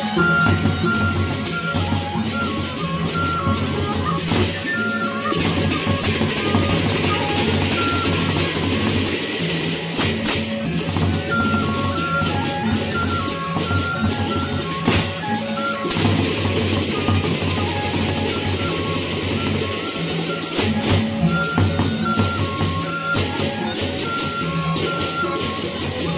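Sasak gendang beleq ensemble playing: large double-headed barrel drums beaten with sticks and seated players clashing hand cymbals in a dense, driving rhythm, under a high stepping melody line.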